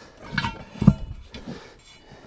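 Steel split-rim wheel being set down into a truck tire: three dull knocks of the rim against the rubber, the loudest about a second in, the first with a light metallic ring.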